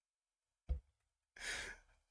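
Mostly quiet. A short puff of breath comes about two-thirds of a second in, then a longer breathy exhale through the nose or mouth about halfway through: a man stifling a laugh.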